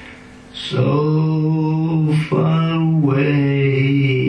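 A man singing long held notes in a slow, chant-like line. He comes in after a brief pause, just under a second in.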